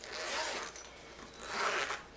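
Zipper on a black leather concealed-carry waist pack being pulled open along its zip-away compartment, in two strokes: one at the start and a second near the end.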